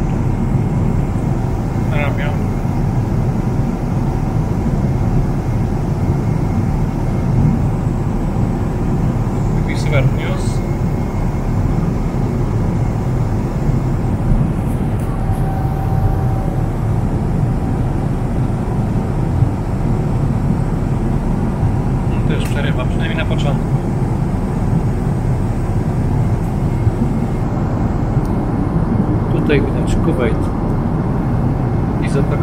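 Steady cabin noise of a Boeing 777-300ER airliner at cruise: an even low rush that never changes, with a few brief, faint snatches of voices.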